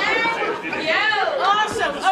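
Several voices talking over one another: lively chatter, with no other sound standing out.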